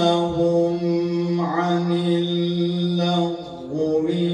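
A male qari reciting the Quran in the drawn-out, melodic tilawah style, holding one long steady note for about three seconds. A short break follows, and the next phrase begins just before the end.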